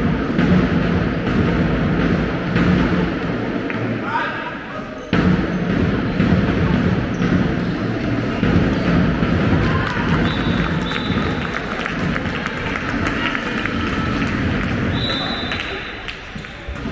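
Handball match play in a sports hall: the ball bouncing on the wooden floor among players' and spectators' shouts and calls, with a few brief high-pitched squeaks later on.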